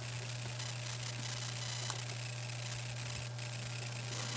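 Steady low hum with a faint even hiss: the background noise of the screen recording, with a couple of faint short clicks about two seconds in and near the end.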